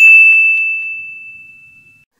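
A single bright ding, the bell sound effect of a subscribe-button animation, struck once and fading away over about two seconds, with a couple of faint clicks in the first moment.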